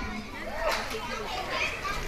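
Faint voices in the background, much quieter than the speech on either side.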